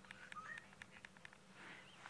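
Near silence in the bush: a few faint clicks and a few short, faint bird chirps.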